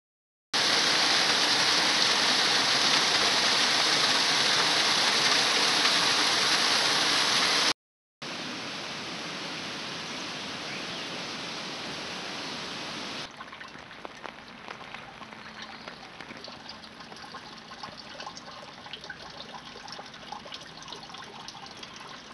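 Water spilling over a small weir into a stream, a loud steady rush. After a short break about eight seconds in, it comes back as a quieter steady flow of shallow stream water. About thirteen seconds in it drops to a faint trickle with scattered small clicks.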